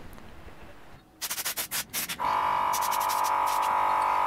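A rapid run of clicks, then about two seconds in a small air compressor kicks in and runs with a steady hum; it keeps cutting in because it is small for the air tool it is feeding.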